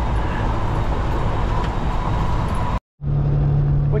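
Semi-truck engine drone and road noise heard inside the cab while driving. About three-quarters of the way in, the sound cuts out for a moment and comes back with a steadier, deeper hum.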